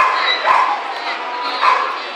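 Dogs barking and yipping over a steady babble of many voices, with the loudest yelps at the start, about half a second in, and near the end.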